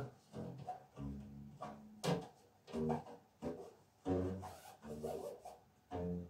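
Homemade upright cigar-box bass being plucked: a run of about a dozen separate low notes at changing pitches, each starting sharply and dying away.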